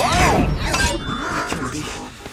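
Film action sound effects from a giant-robot battle: crashing and breaking impacts over orchestral score, with a rising-and-falling mechanical whine at the start and a few sharp hits just under a second in.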